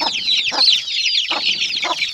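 A large brood of Gigante Negro chicks, 27 of them with one hen, peeping continuously in a dense chorus of short, high, falling cheeps. A few short, lower clucks from the mother hen come in about every half second.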